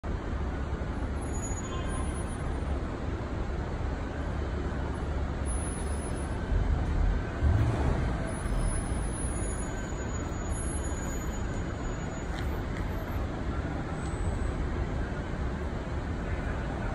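Street traffic noise: a steady low rumble of passing road vehicles, swelling louder for a moment about seven seconds in.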